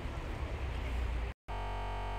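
Low, steady outdoor street rumble. About a second and a half in it cuts off sharply at an edit, and background music comes in with a steady held synthesizer chord.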